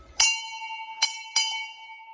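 Hanging metal temple bell struck three times by hand, the last two strikes close together. Each strike rings on with many clear tones that fade slowly.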